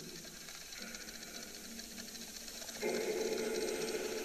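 A spirit box sweeping through radio stations: rapid choppy clicking and static with steady tones in it, louder from about three seconds in.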